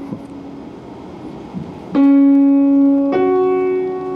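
Grand piano played slowly: a note fades for about two seconds, then a loud new note is struck about two seconds in and another about a second later, each left ringing.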